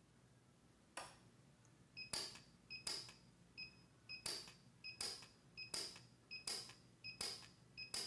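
PUK U5 micro TIG welder firing single short weld pulses, one sharp snap roughly every 0.7 s from about a second in, tacking filler wire along a mold edge. Short high tones sound between some of the pulses.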